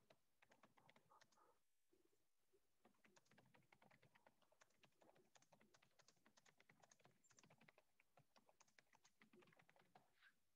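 Faint typing on a computer keyboard: a few scattered key clicks, then after a short pause a fast, steady run of keystrokes.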